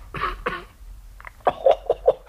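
A person coughing three times in quick succession, then a short voiced sound near the end: a cough acted out by a storyteller voicing a character with a cold.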